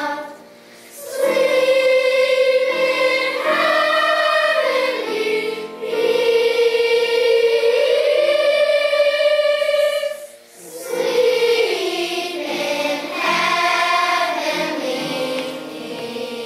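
Children's choir singing long, held phrases, with short breath pauses about half a second in and again about ten seconds in.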